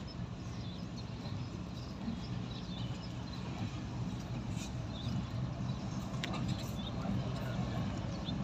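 Diesel-electric locomotive engine running with a steady low rumble as the train approaches slowly, growing gradually louder.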